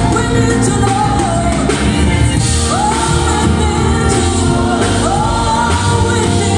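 A live gospel band playing a song, with singers on microphones and a guitar, the sung melody gliding up and down over the steady accompaniment.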